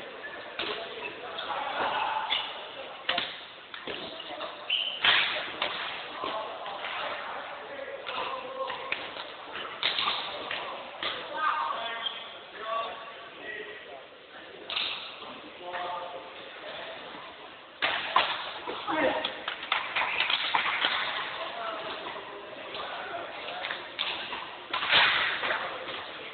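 Indistinct chatter of voices in a large, echoing hall, with sharp hits of badminton rackets striking the shuttlecock every few seconds during play.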